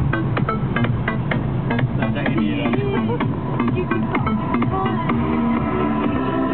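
Electronic dance music with a steady beat and a melody line, playing on a taxi's car stereo inside the cabin.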